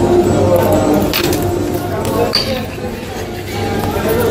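Background music and voices, with a few light clinks of a metal fork against a ceramic plate.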